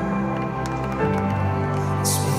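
Live worship music heard from among an arena crowd: slow, sustained keyboard chords, with the chord and bass changing about a second in.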